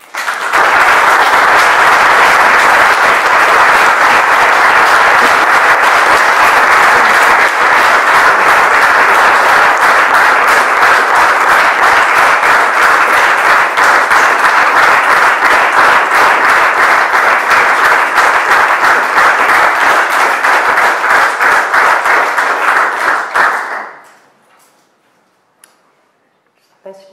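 An audience applauding. The clapping starts at once, stays steady and loud for over twenty seconds, and dies away quickly near the end.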